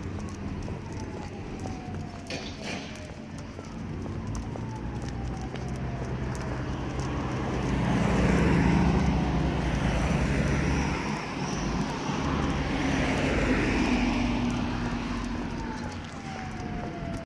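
Road traffic: cars passing on the street alongside, the rushing sound swelling twice, loudest about eight and thirteen seconds in.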